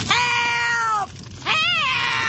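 An elderly woman's voice wailing two long cries of "Help!". The first cry is level and drops at the end; the second rises and falls.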